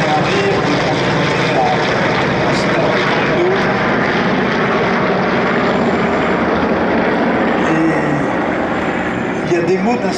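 Piston engines of a formation of vintage propeller aircraft, led by a PBY Catalina flying boat with a twin-engine Beech 18 and a single-engine fighter, droning steadily as they pass overhead.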